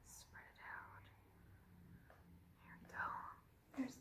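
Mostly near silence, broken by a woman's faint breathy whisper or murmur twice: once briefly after half a second and once more clearly about three seconds in.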